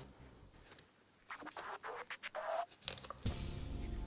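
A knife cutting and scraping through raw lamb shoulder at the bone and joints on a plastic cutting board: a run of short scrapes and clicks with a brief rising squeak. Background music comes in louder near the end.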